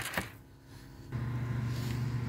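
A brief click, then near quiet, then a steady low hum that starts about a second in and holds at one pitch.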